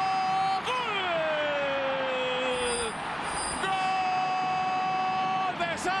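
Football TV commentator's long, drawn-out goal shout ('gooool'), held at one pitch, sliding down over about two seconds, then after a short breath held level again for about two seconds, over steady stadium crowd noise.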